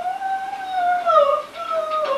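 A long unbroken howl, its pitch rising slightly and then sinking slowly.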